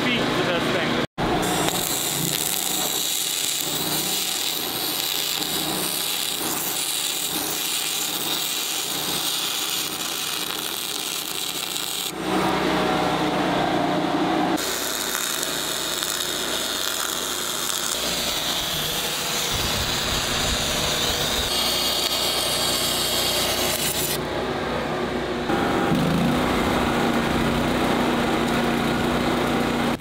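Metal fabrication work in a run of short takes: power-tool cutting and grinding, and arc welding. The sound changes abruptly every several seconds, with a steady hum near the end.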